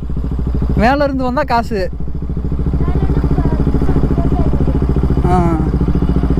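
Motorcycle engine running steadily at low speed, with people's voices talking over it about a second in and again briefly near the end.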